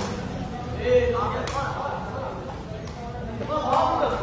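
A sepak takraw ball being kicked during a rally: two sharp smacks, about a second and a half in and near the end, over shouts and chatter from players and spectators.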